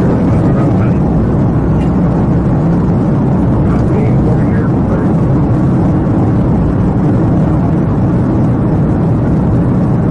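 Loud, steady road and wind noise from inside a police cruiser driving at high speed on the highway during a pursuit.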